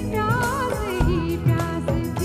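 Live Bollywood-style band music: a dholak keeps a regular beat under an ornamented, wavering melody line.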